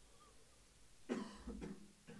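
A man coughs once, sharply, about a second in, then gives a short "uh".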